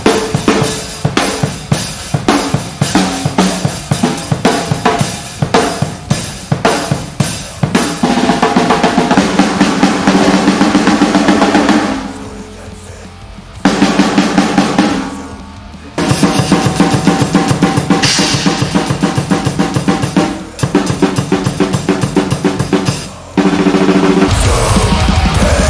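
Drum kit played fast in a death metal style: a dense run of rapid snare and bass-drum strikes with cymbals, dropping away briefly about twelve seconds in and again about fifteen seconds in.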